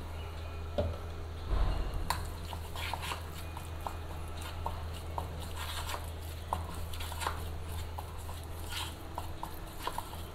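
Steel spoon stirring and scraping a thick, damp herbal-powder paste in a bowl: soft wet squishing with many light clicks of the spoon on the bowl, and a louder bump about a second and a half in.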